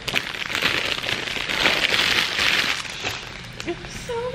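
Clear cellophane gift wrap crinkling as it is pulled off a gift mug: a dense crackle lasting about three seconds that thins out near the end.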